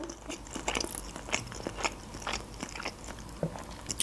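A mouthful of sushi roll being chewed close to the microphone: a scatter of short, irregular wet mouth clicks.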